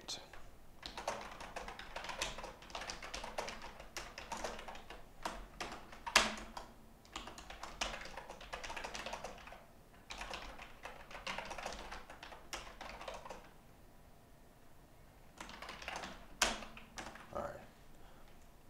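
Typing on a computer keyboard: runs of rapid keystrokes with a couple of harder single key presses, and a short pause near the end before a last burst of typing.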